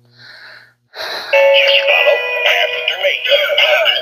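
Animated singing plush horse toy playing its recorded song with singing, starting about a second in; the toy works.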